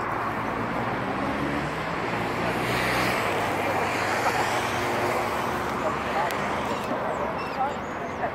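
Busy city street ambience: a steady hum of traffic and engines under the murmur of passers-by talking, with a few short bird calls near the end.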